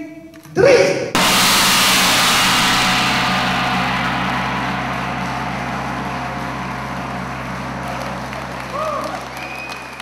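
A large Paiste gong struck once with a soft felt mallet about a second in, then ringing out with a long wash and a steady low hum that fades slowly over the next several seconds.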